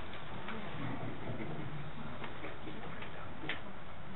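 Meeting-room background: a steady hiss with a few faint, scattered clicks and knocks and a low murmur underneath.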